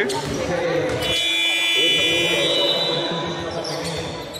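Gym scoreboard buzzer sounding one steady, high-pitched blast of about two seconds, starting about a second in: the horn that signals a substitution at a dead ball.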